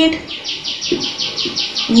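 A bird chirping rapidly: a steady series of about a dozen identical high chirps, roughly six a second.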